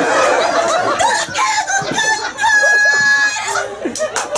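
A performer's wordless vocal cries, wavering at first and then one long, high note held for nearly a second about two and a half seconds in.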